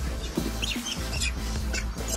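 Short, high chirping squeaks from macaques squabbling over bananas, over background music with a steady bass.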